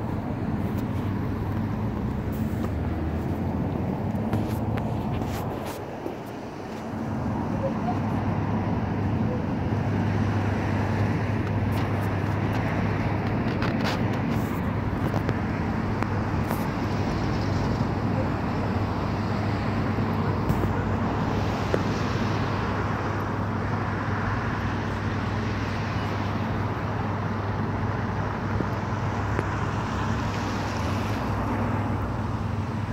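Road traffic with a steady low engine hum and a few light clicks.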